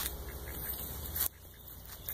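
Low rustling and scraping noise with a few faint clicks and a steady low rumble, dropping away suddenly about a second and a quarter in.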